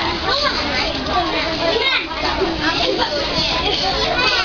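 A group of children talking and calling out at once, their voices overlapping without a break.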